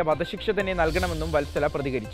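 Speech in Malayalam over a light music bed, with a brief high hissing whoosh about a second in.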